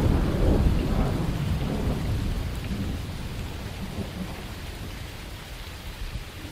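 Thunder rumbling over steady rain, loudest at the start and slowly dying away.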